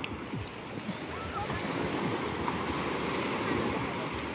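Sea surf washing onto a beach: a steady rushing wash of waves that swells slightly over the few seconds, with faint distant voices.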